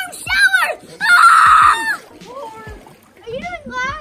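Pool water splashing loudly for just under a second, about a second in, between high-pitched children's voices.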